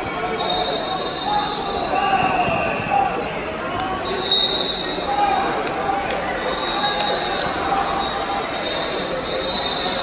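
Echoing voices and shouts in a gymnasium during a wrestling match, with scattered sharp knocks. Several high-pitched tones lasting about a second each come in near the start, about four seconds in, about seven seconds in and near the end.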